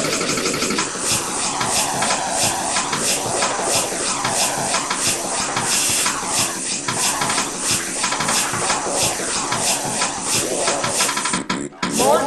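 App-made rhythmic remix of sampled sounds: short clips chopped and repeated at a fast, even beat, with pitch swoops rising and falling about every second and a half. It breaks off briefly just before the end.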